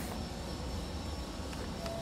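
Steady low rumble and hiss of open-water background, with a faint high steady tone running through it and no distinct events.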